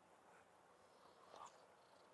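Near silence, with only a faint background hiss.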